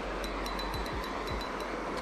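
Steady rushing noise of wind and running water, with a few faint light ticks.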